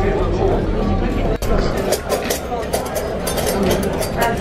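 Busy buffet restaurant: background chatter over a low steady hum. After a sudden break about a second and a half in, plates and cutlery clink repeatedly.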